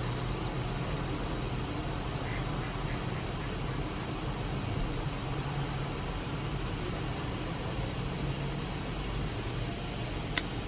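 Steady outdoor background noise with a faint low hum underneath, unchanging throughout, with no distinct events.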